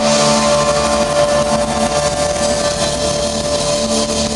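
Live rock band playing, with electric guitars, drum kit and keyboard, over a long held note.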